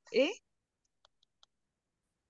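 A single short spoken 'eh?' rising in pitch at the very start, then near silence with four faint, evenly spaced clicks about a second in.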